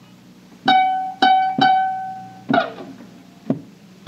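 Closing music on a plucked string instrument: a few single notes, each ringing out and fading, starting about half a second in, with a sliding strum partway through.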